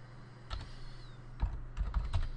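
Typing on a computer keyboard: a few separate keystrokes, one about half a second in and a quicker run of them near the end, over a faint steady low hum.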